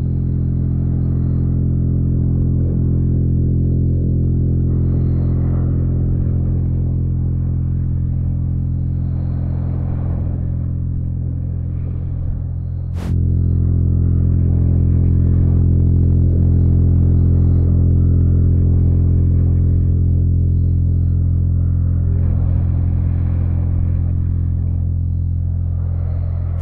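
NASA's Kepler sonification of the star KIC 7671081 B, its oscillations turned into a steady low drone of stacked tones. About halfway through there is a sharp click and the drone steps up louder.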